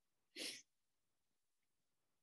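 Near silence, broken once about half a second in by a short puff of breath noise, a quick exhale of the teacher's at the microphone.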